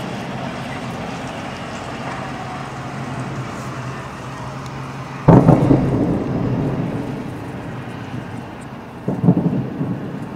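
Distant fireworks salute shells going off: a sudden heavy boom about five seconds in that rolls away over a couple of seconds, then a second burst of several quick bangs near the end.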